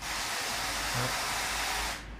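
A steady hiss like white noise, about two seconds long, that starts and cuts off abruptly.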